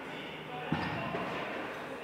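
Loaded barbell with rubber bumper plates set down on a lifting platform at the bottom of a deadlift rep: one heavy thud about 0.7 s in, followed by a lighter knock.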